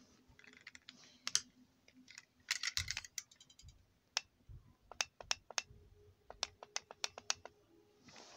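Faint, irregular clicking of buttons being pressed on a toy radio-control handset, a short cluster a few seconds in and a quick run of presses near the end.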